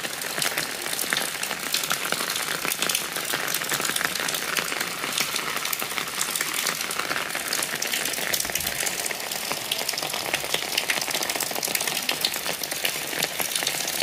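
Steady rain falling, an even hiss full of small, sharp drop impacts.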